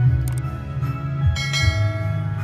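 Sound effects of a YouTube subscribe-button animation over background music: a short click near the start, then a bell chime about one and a half seconds in.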